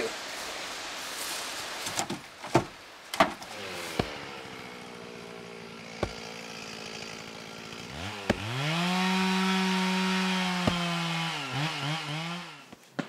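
Split firewood clunking as pieces are tossed onto a pile, a few knocks in the first four seconds. Then a chainsaw running, revving up to full throttle about eight seconds in and held there before easing off near the end, with a single sharp knock partway through.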